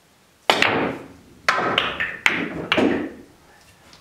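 Pool cue striking the cue ball, then a run of sharp billiard-ball clacks as the balls collide with each other and the rails: five hard hits in about two and a half seconds, each ringing briefly.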